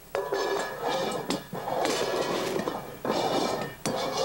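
Upturned stainless steel mixing bowls shuffled across a wooden butcher-block counter: a continuous scraping, rattling rush with a few sharp clinks, broken by two short pauses.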